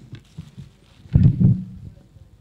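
A few dull, low thumps about a second in, the loudest sound here, with light crinkling of foil gift wrap before them.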